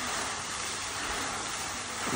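Lake fountain jets spraying and falling back onto the water, a steady splashing hiss.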